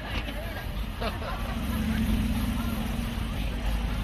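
Maserati's engine running as the car moves off, a steady low note coming in about one and a half seconds in, with voices of people around it.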